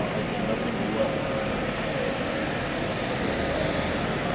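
Steady city-centre street traffic noise: a continuous even wash of road-vehicle sound.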